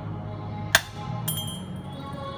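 A quarter strikes ceramic dishware with a single sharp clink a little before halfway, followed about half a second later by a brief high metallic ringing, over background music.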